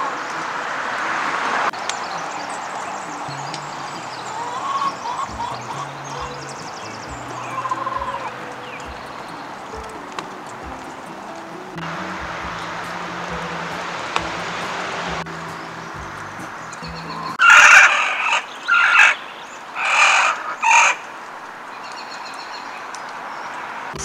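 Chickens calling, with a run of four loud calls about 17 seconds in. Background music with a soft, even beat plays underneath.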